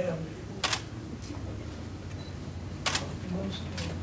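Three short sharp clicks: one about a second in, then two close together near the end.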